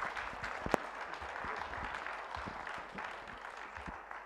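Audience applauding, easing off slowly, with one sharper knock under a second in.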